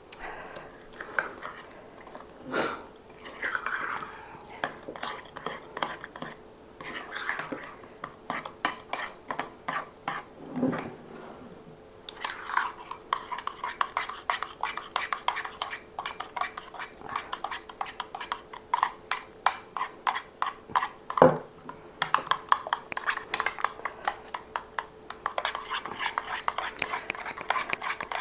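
A metal spoon stirring and beating a mayonnaise dressing in a small glass bowl, clicking against the glass. The strokes are sparse at first and turn quick and steady about halfway through, with a few louder knocks against the bowl.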